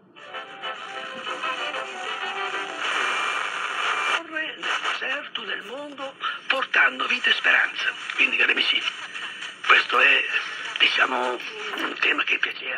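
Subcarrier broadcast audio from an AVI Radio FM/SCA receiver's small speaker, thin with no bass. Music plays for about the first four seconds, then a short break as the set is retuned, and then a broadcast voice speaking, the Italian-language subcarrier programme on 99.5 MHz.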